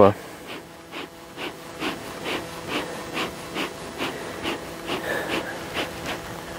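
Honeybees buzzing around their hives, with a soft, regular pulsing sound over it, a little more than twice a second.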